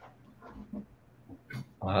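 A mostly quiet pause on a video call, with a few faint short sounds and a click about one and a half seconds in; then a person starts to speak near the end.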